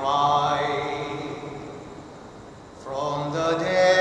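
Slow devotional chant sung by a voice: a long held note fades away over the first two seconds, and the next phrase begins about three seconds in.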